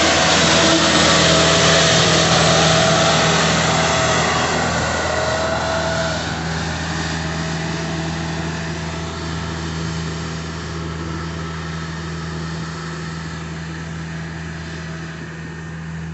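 Elgin Pelican mechanical street sweeper running past at close range with its gutter broom sweeping the curb: a steady engine hum under a loud brushing rush, with a thin whine for the first few seconds. It all fades steadily as the sweeper moves away.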